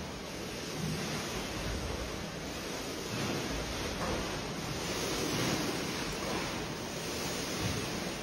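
Water in a rooftop swimming pool sloshing in waves and spilling over its edge onto the deck as an earthquake shakes the building, a steady rushing that swells and eases a little.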